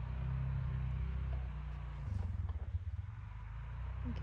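A distant ATV engine running as it goes down a hill trail. It is a low, steady note that turns uneven about halfway through.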